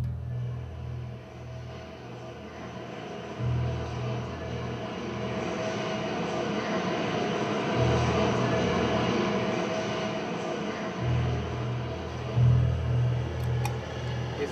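Synthesizer guitar sound design imitating a train: a looped pattern of low, pulsing notes repeats under a rushing noise with a steady high tone. The noise swells over the first several seconds and then holds.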